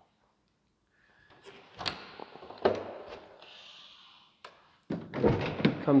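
The rear glass hatch of an ARE truck cap being unlatched and swung open: a few clicks and knocks from the latch handle and hatch, a brief hiss in the middle, and a louder thunk near the end.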